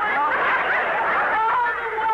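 Studio audience laughing: many voices at once, a steady, loud wash of laughter.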